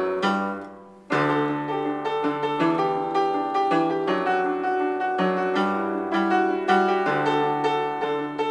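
Piano being played: a few notes fade away in the first second, then both hands come in with full chords over a left-hand bass line about a second in and play on steadily.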